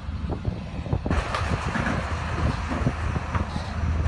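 Low, steady engine drone from the docked ferry's running engines and a petrol tanker truck driving down the ferry's car ramp, with a rushing noise coming in about a second in.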